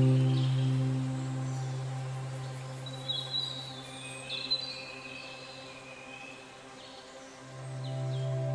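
Soft ambient background music: a held low note and chord fade away slowly, a few short high chirps sound about three to five seconds in, and the music swells back near the end.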